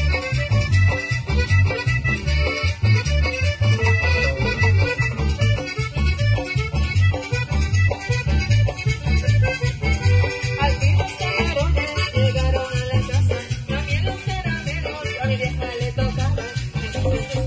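Live tropical band playing, with accordion leading over guitars and a steady bass-and-drum beat.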